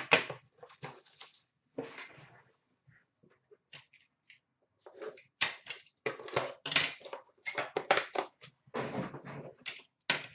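Irregular rustling and clattering from hands handling trading-card packaging, a metal box tin and its wrapping, busiest in the second half.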